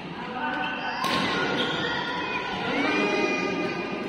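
Badminton doubles rally on an indoor court: a sharp racket hit on the shuttlecock about a second in, footfalls and thuds on the court floor, and voices in the hall.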